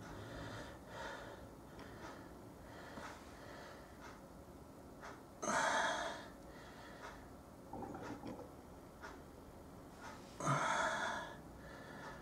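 Quiet room tone broken by two audible breaths from a person close to the microphone, each under a second, one about halfway through and one near the end, with a few faint soft ticks between.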